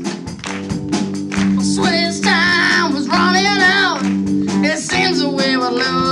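Live rock band playing: a drum kit keeping time under sustained electric guitar chords, with a wavering lead melody held over them about two to four seconds in.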